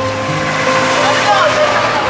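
School bus driving past close by: a steady rush of engine and tyre noise.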